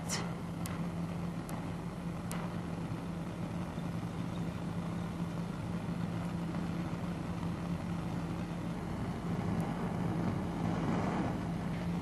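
A steady low hum with an even hiss behind it, and three faint clicks a little under a second apart in the first few seconds.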